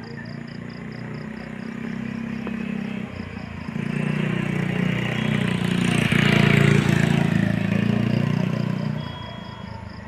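A motor vehicle's engine passing by. It swells over several seconds to its loudest about six to seven seconds in, then fades away near the end.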